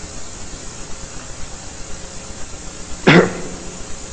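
Steady hiss of an old lecture recording between sentences, broken about three seconds in by one brief, loud vocal sound.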